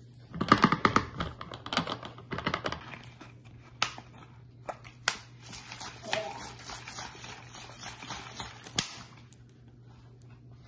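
A spoon clicking and rattling rapidly inside a jar as vinegar and food colouring are stirred, for about two and a half seconds. After that come scattered single knocks and handling noise as a plastic bottle of the coloured vinegar is shaken.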